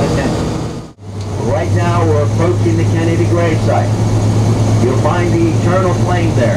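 Tour vehicle's engine running with a steady low hum under a man's narrating voice; the sound drops out for a moment about a second in, and the hum is stronger after it.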